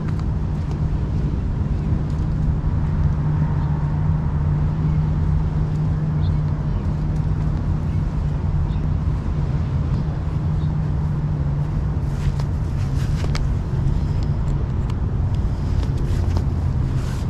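Steady low hum of a motor vehicle's engine running, constant in pitch and level, with a few faint clicks in the last few seconds.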